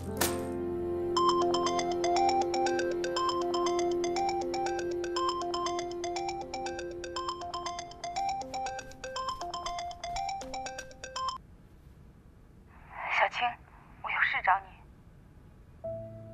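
Mobile phone ringtone: a repeating melody of short bright notes over held background music, stopping about eleven seconds in as the call is answered. Two short bursts of sound follow near the end.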